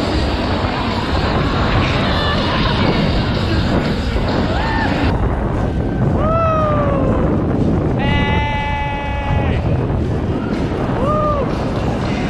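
Wind rushing over a camera microphone during a zipline ride, a steady buffeting roar. Over it come a few short whoops from the riders and one long held note about two-thirds of the way through.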